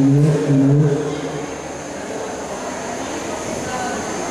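Two short held voice-like tones in the first second, then the steady murmur of a crowd talking in a large hall.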